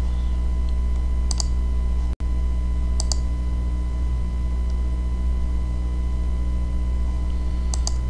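A few sharp computer-mouse clicks at irregular intervals over a loud, steady low electrical hum. The sound drops out for an instant about two seconds in.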